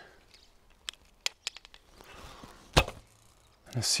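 A few light clicks of an arrow being readied on a short Turkish Sipahi bow, then, about three-quarters of the way in, one sharp crack as the bow is shot.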